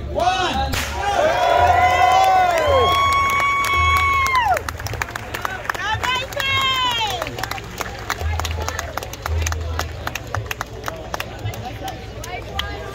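A large crowd shouting and cheering, with one long held whoop about three to four seconds in. The cheering then thins to scattered shouts over many sharp claps.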